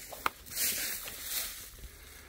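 Footsteps through dry, matted grass: two rustling steps about a second apart, with a short click just before them.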